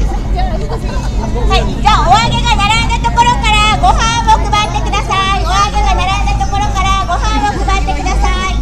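Crowd chatter at an outdoor gathering over a steady low rumble; from about two seconds in, a high-pitched voice with a wavering pitch rises above it and carries on to the end.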